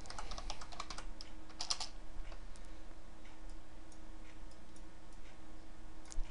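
Typing on a computer keyboard: a quick run of keystrokes over the first two seconds, then scattered clicks, over a faint steady hum.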